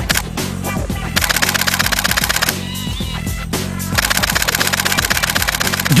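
Canon EOS 7D DSLR shutter firing in high-speed continuous bursts of about eight frames a second. It gives two rapid runs of clicks, the first starting about a second in and the second near the end.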